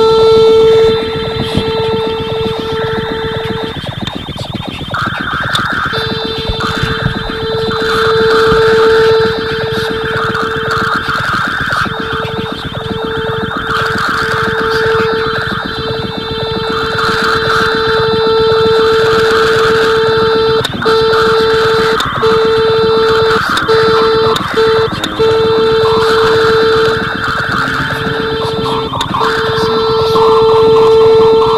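Improvised experimental electronic music: a loud, steady held tone with higher steady tones over it, dropping out briefly several times, while fluttering higher tones come and go from about five seconds in.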